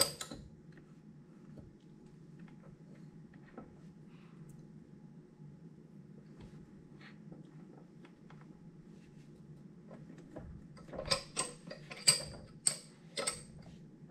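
Faint low hum with a few scattered light clicks, then a quick run of louder sharp mechanical clicks and knocks near the end.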